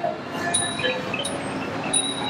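Thai traditional music: a small metal percussion instrument struck about every two-thirds of a second, each strike ringing high, with short tuned percussion notes in between.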